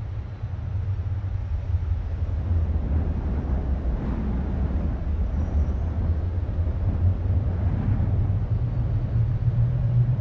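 A steady low rumble with a faint hiss above it, with no music or singing.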